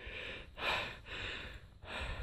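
A man breathing hard from exertion while hiking: several quick, hissy breaths in and out close to the microphone.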